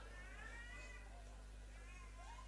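Near-quiet pause: a low steady hum under faint, high, drawn-out calls that rise and fall in pitch.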